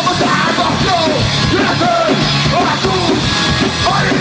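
Live rock band playing loud, in a punk style: electric guitar and drum kit with a vocalist yelling into a microphone.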